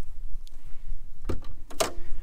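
Land Rover Defender's rear door being opened by its old Series-style handle: two sharp latch clicks about half a second apart near the end, over a steady low rumble.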